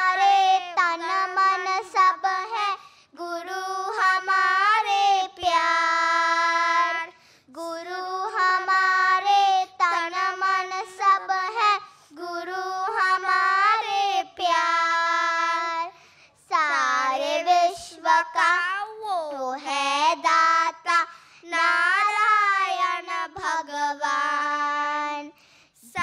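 Children singing a Hindi devotional bhajan into microphones, in sung phrases a couple of seconds long with short pauses for breath between them.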